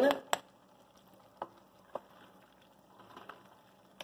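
A few light clicks and knocks of a spoon on a bowl and an aluminium cooking pot as margarine is scooped into a pot of noodles and vegetables, then faint stirring of the food near the end.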